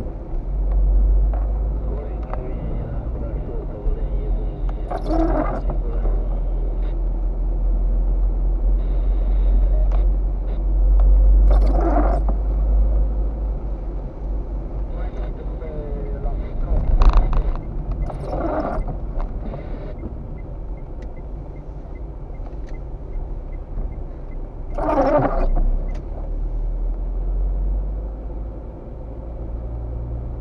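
Car cabin noise while driving on a wet road: a steady low engine and tyre rumble, with the windscreen wipers sweeping intermittently, a short squeaky swish about every six or seven seconds.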